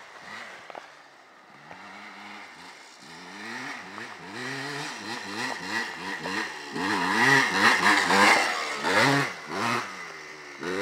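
Dirt bike engine revving up and down, its pitch rising and falling every half second or so as the rider works the throttle over a run of jumps. It grows louder as the bike approaches and is loudest about eight seconds in as it passes close.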